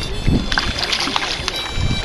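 Water splashing in short bursts as a hooked fish thrashes at the surface beside a fishing kayak.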